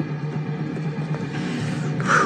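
A steady low hum with a faint held drone beneath it.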